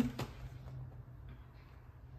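Quiet kitchen room tone with a low steady hum, a light click just after the start, and faint handling noises about a second and a half in as a cardboard ready-meal box is handled.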